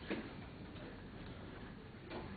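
A single sharp click just after the start, then faint room noise.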